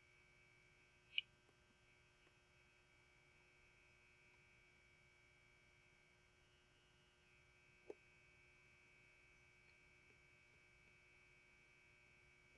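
Near silence: a faint steady electrical hum, with two brief faint clicks, one about a second in and one near the eight-second mark.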